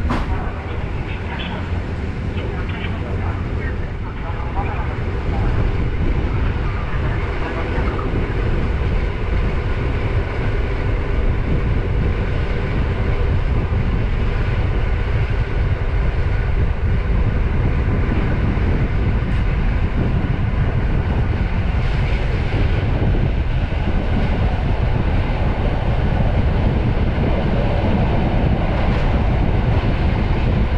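Train running on the rails: a steady, heavy low rumble that grows louder a few seconds in and then holds.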